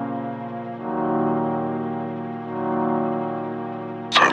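Intro of a dark piano drill instrumental: sustained, slowly swelling chords that change about a second in and again near the middle, with no drums.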